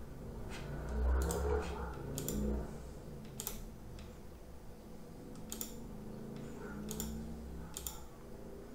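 Computer mouse clicking about seven times, separate sharp clicks spaced irregularly a second or so apart.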